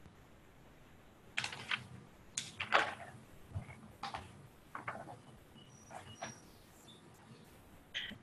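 Faint, scattered clicks and knocks at irregular intervals, carried over an open video-call microphone, with a few brief high blips in between.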